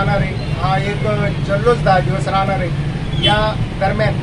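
A man speaking steadily, over a continuous low hum in the background.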